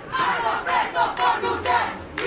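A crowd of people shouting at once, several raised voices overlapping.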